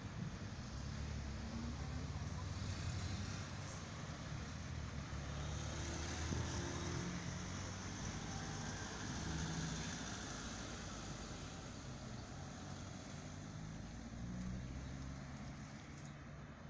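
Road traffic: a motor vehicle's low engine rumble and tyre noise swelling through the middle and fading toward the end.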